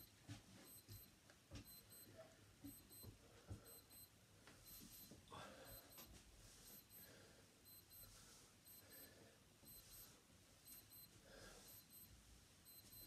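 Near silence: the faint breathing of a man doing bodyweight squats, with a faint, high electronic ticking repeating at a regular pace throughout.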